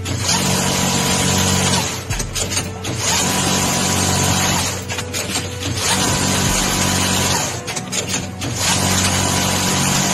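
Automatic production machine working a red-hot part in repeating cycles: a steady hum with a thin whine, broken about every three seconds by a short burst of clicks and clatter as the tooling moves.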